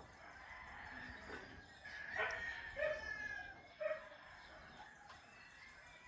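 A rooster crowing: one long crow that builds over the first seconds and ends about four seconds in.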